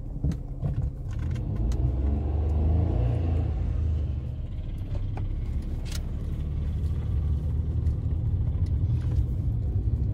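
Maruti Alto 800's 800 cc three-cylinder engine heard from inside the cabin as the car drives off, its note rising over the first few seconds and then running steadily over a low road rumble.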